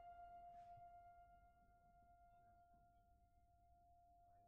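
A single high note on a grand piano left ringing and slowly dying away, very faint, its upper overtones fading first. There is a faint tick about half a second in.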